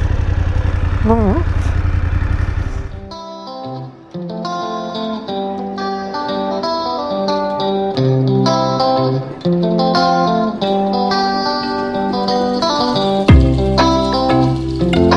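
BMW F850 GS Adventure's parallel-twin engine running with wind rush for about the first three seconds, then cut off by background guitar music with plucked notes that carries on to the end.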